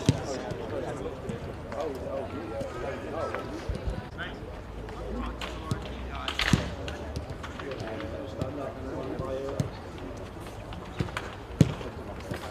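A football struck sharply by boots several times, the loudest kick near the end, over the calls and chatter of players on the pitch.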